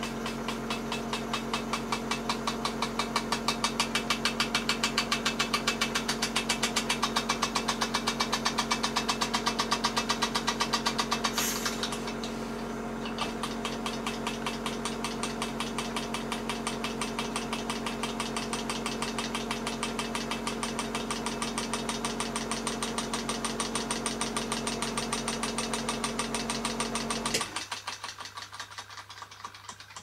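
Märklin toy donkey engine running on compressed air, giving rapid, even exhaust beats over a steady hum. Near the end the hum cuts off suddenly, and the beats slow and fade as the engine runs down. The owner judges the piston and cylinder worn out, with most of the steam escaping past the piston.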